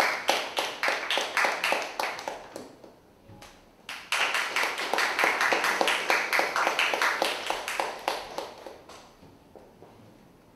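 Audience applauding, dying away about three seconds in; after a short lull a second round of applause breaks out suddenly about a second later and fades out near the end.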